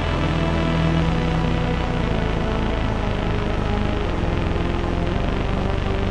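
Studio Electronics Boomstar 4075 analog synthesizer playing held low bass notes that change every second or two, run through a Strymon Big Sky reverb pedal set to its Studio reverb, which spreads them into a dense, dark wash.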